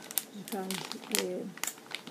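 A woman speaking Portuguese while a clear plastic bag of Brazil nuts crinkles in her hands with a few short rustles.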